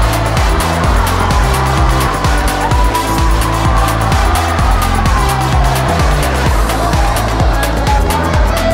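Background music with a steady beat, a repeating bass line and a lead line that glides up and down.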